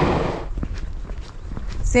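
A train passing over a level crossing, its rushing rail noise cutting off about half a second in as the last car clears; then footsteps of someone walking.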